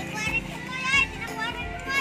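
A child's high-pitched voice calling out twice, without clear words, over background music.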